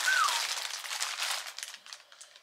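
Plastic poly mailer bag crinkling and rustling as it is handled, dying away after about a second and a half. A short whistle that rises and then falls comes right at the start.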